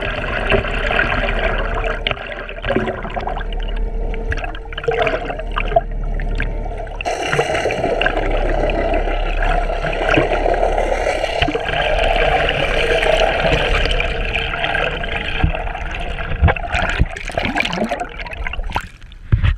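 Water rushing and gurgling past a camera held underwater, muffled by its housing, with a steady hum beneath it. Sharper splashes come near the end as the camera nears the surface.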